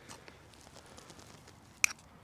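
Faint small rustles of a spoon in ground coffee, then a single sharp click near the end as the metal spoon taps the moka pot's metal filter basket.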